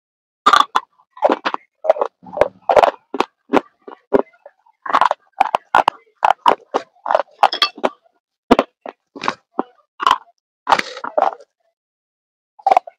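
A person biting and chewing crunchy food: sharp, irregular crunches, several a second, with brief pauses between mouthfuls.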